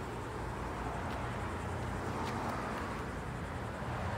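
Steady low rumble of outdoor background noise, with a couple of faint clicks.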